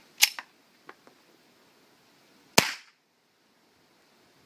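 Fort-12G 9 mm P.A.K. gas pistol firing Teren-3 gas cartridges: a sharp report about a quarter second in, two faint clicks near one second, then a louder report about two and a half seconds in. The shots are weak gas-cartridge shots that fail to cycle the slide.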